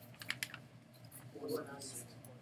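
A quick run of light clicks in the first half second, like keys being pressed or a pen tapping, then a faint distant voice about a second and a half in.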